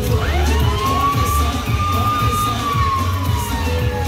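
A siren sound effect over dance music: one smooth tone sweeps up in the first half second, holds, then slides slowly down and fades near the end, while the music's bass beat carries on underneath.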